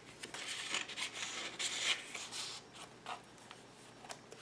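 Paper and cardstock rustling and sliding as cards are handled and a page of a scrapbook mini album is turned. The rustle fills the first two and a half seconds, then dies down to faint.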